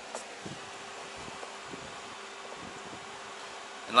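Steady fan-like hum holding one constant tone, with a few faint clicks and taps from hands handling a motorcycle's wiring.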